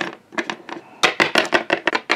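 Plastic Littlest Pet Shop figure tapped along a hard tabletop in a quick run of light clacks, like toy footsteps. The taps are faint at first and come louder and faster in the second half.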